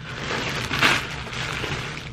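Crinkling of a clear plastic garment bag being picked up and handled, with a louder rustle about a second in.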